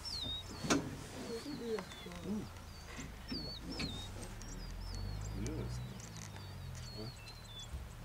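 Birdsong: a steady run of short, high, wavy whistled notes, several a second, from birds in the bush. A sharp click comes about a second in, and low murmuring voices and a low rumble sit underneath.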